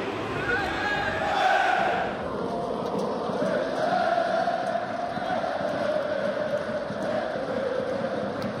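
Large football crowd chanting together in long, drawn-out sung notes, steady throughout.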